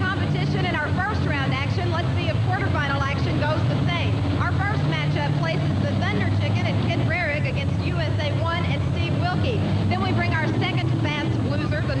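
Steady low drone of monster truck engines running in the arena, under a woman speaking into a microphone.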